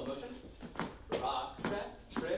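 Speech: a voice calling out the dance count in rhythm as the couple dances.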